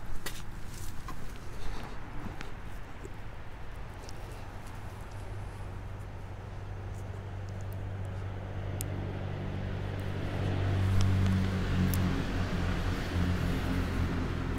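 A low motor hum, like a vehicle engine running nearby, building louder over the second half. A few light clicks of handling near the start.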